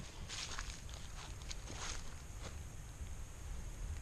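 Soft, faint footsteps of a hiker walking along a woodland trail, about half a dozen steps at an uneven pace, over a faint low rumble.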